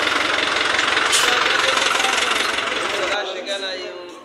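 A truck engine running nearby, loud and steady, with voices faintly in the background; the sound cuts off abruptly about three seconds in.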